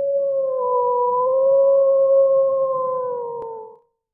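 A wolf howling: one long held call that wavers slightly and fades out near the end.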